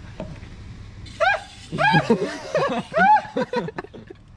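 Young people laughing and giggling in short bursts, starting about a second in, over a low steady hum.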